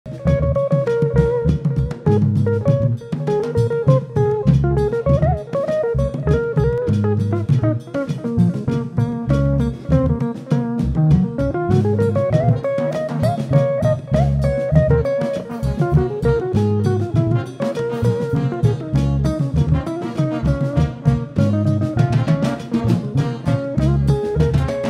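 Afro-Brazilian jazz band playing: a driving pattern on atabaque hand drums and drum kit under an electric guitar melody. The music starts abruptly at the beginning.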